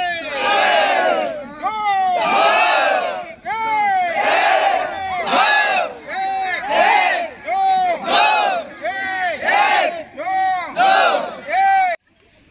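A large group of trainees shouting in unison to the cadence of a push-up drill: short loud calls about once a second, each rising and falling in pitch.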